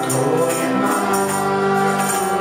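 Live worship band playing a Hebrew song: voices singing over guitars, with a tambourine jingling in a steady rhythm.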